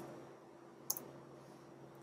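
A computer key clicking about a second in, with a smaller tick right after, over faint room tone.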